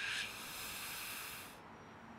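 A man's long breath hissing through his mouth, lasting about a second and a half and then stopping.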